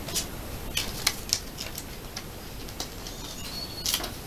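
Paper stickers being handled: a Panini sticker peeled from its backing and laid on the album page, giving a handful of short, crisp paper crackles, the loudest about a second in and another just before the end.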